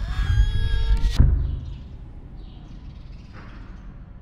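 Horror-film jump-scare sound effect: a shrill, ringing tone over a deep rumble that ends in a sharp loud hit about a second in, then drops to a quiet low hum.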